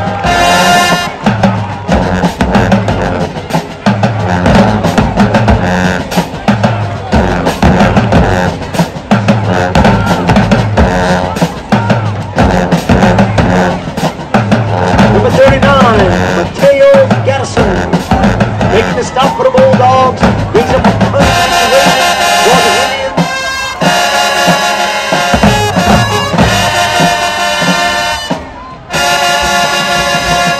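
High school marching band in the stands: the drumline plays a steady cadence with crowd voices over it. About 21 seconds in, the full band comes in loud with its brass and sousaphones, with a short break near the end.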